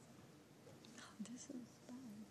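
Near silence: room tone with faint, brief murmured voices in the second half.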